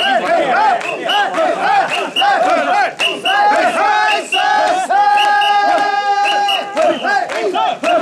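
Mikoshi bearers shouting a rhythmic carrying chant in unison as they heave the portable shrine along, many voices overlapping. About five seconds in, one voice holds a long call for nearly two seconds over the chant.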